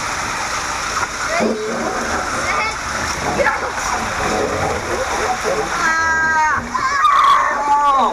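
Water rushing and bodies sliding fast through an enclosed plastic tube waterslide, a steady loud wash of noise, with riders yelling; a long high-pitched yell comes about six seconds in.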